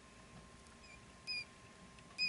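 Lone quail chick peeping: a faint short, high peep just before a second in, then a louder one a moment later. This cheeping is what the keeper puts down to a chick feeling nervous on its own.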